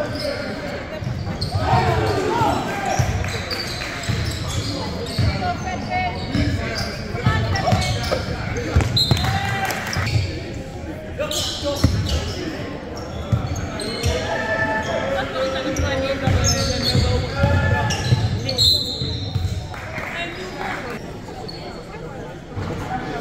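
A basketball bouncing on a hardwood gym floor during live play, with repeated sharp bounces, brief high sneaker squeaks and players' voices ringing in the gymnasium.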